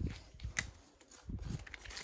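A few soft scrapes and taps of a metal spoon smoothing wet sand-and-cement paste over a bowl mould.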